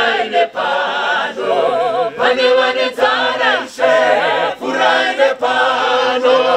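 A cappella church choir of men and women singing a hymn in Shona in harmony, a woman's lead voice on a microphone over the choir, in short repeated phrases.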